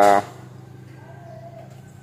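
A man's voice trailing off at the very start, then a pause with a low steady hum and faint background noise, and a faint brief tone about a second in.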